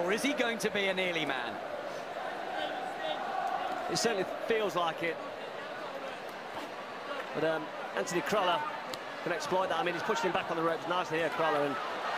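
Boxing arena sound: crowd noise and voices, with occasional short thuds of gloved punches landing.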